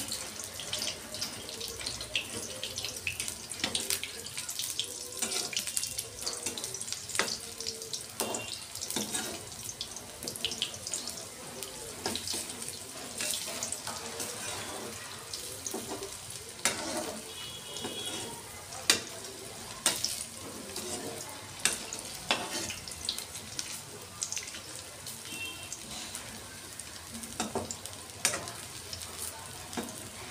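Moong dal fritters frying in hot oil in a metal kadai: a steady sizzle with frequent crackles and pops. Now and then a perforated steel skimmer clinks and scrapes against the pan as the fritters are moved.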